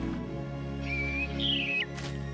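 Orchestral film score holding sustained low notes, with a cartoon bird's whistled two-part chirp about halfway through, the second part ending in a quick downward slide.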